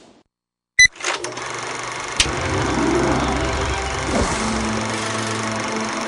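Sound effect of a film projector: a sharp click about a second in, then a steady whirring rattle of the reels running.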